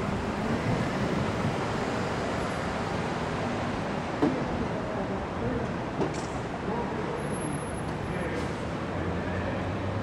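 Steady outdoor city street noise, a traffic-like rumble and hiss, with faint distant voices and a couple of small knocks about four and six seconds in.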